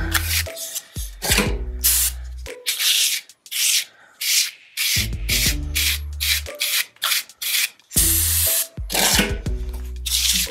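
Trowel edge scraping and scratching at earthen plaster on a wall in quick repeated strokes, knocking off and roughening the surface so fresh plaster can be blended in.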